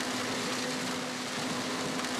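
Combine harvester running steadily while cutting standing maize with its corn header: an even wash of machine noise over a steady engine hum.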